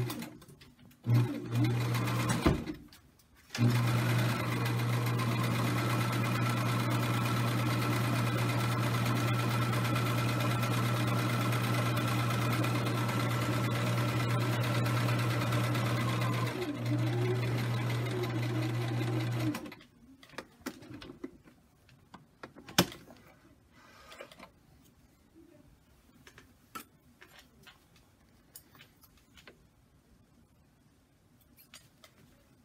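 Domestic electric sewing machine stitching a long straight seam through two layers of cotton fabric: two or three short starts, then a steady run of about sixteen seconds that stops abruptly. Faint handling clicks follow.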